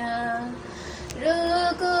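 A young woman singing a Hindi devotional song solo: a held low note, a short breath pause about halfway through, then a steady higher note.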